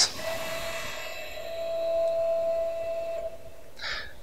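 CrossFire CNC plasma table's stepper motors whining at one steady pitch as the gantry makes a 5-inch incremental jog in the negative Y direction, stopping a little after three seconds in.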